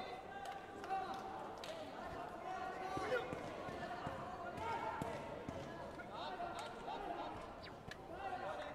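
Voices in a large sports hall, with scattered thuds from the action on the taekwondo mats.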